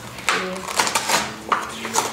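A cardboard Priority Mail mailing envelope being handled and opened, giving a few short crackling, rustling bursts of stiff paper about half a second apart.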